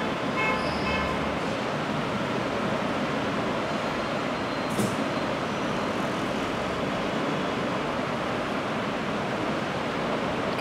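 Hose-fed steam iron pressing a fabric neckline over a steady rushing background noise, with a short sharp hiss about five seconds in.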